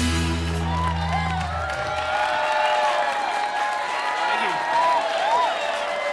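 The band's final chord on electric guitars and bass rings out and dies away over the first two seconds. A small audience then cheers, whoops and claps.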